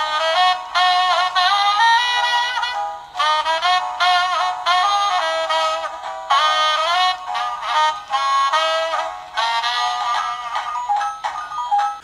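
A battery-powered musical plush toy plays a thin, tinny saxophone-like tune through its small speaker. The tune comes in phrases with short breaks about every three seconds and cuts off near the end.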